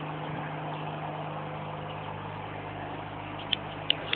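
Water fountain running: a steady rush of water over a steady low hum, with a few short sharp clicks near the end.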